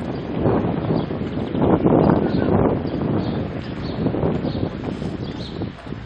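Wind buffeting the microphone in uneven gusts, loudest about two seconds in.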